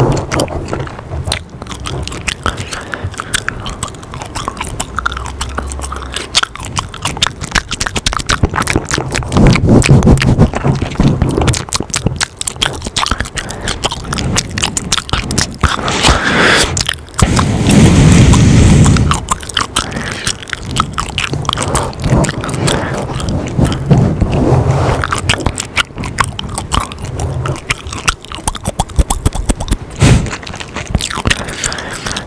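Close-miked mouth sounds of gum chewing: a rapid, continuous stream of wet clicks and smacks right at the microphone, with a few louder swells.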